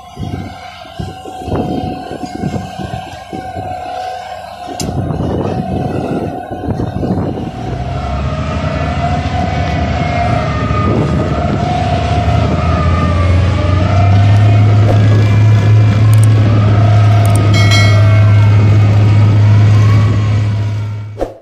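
Heavy piling-rig machinery at work. Irregular knocks and clatter at first, then a steady mechanical drone that builds from about five seconds in and turns loud and even in the second half.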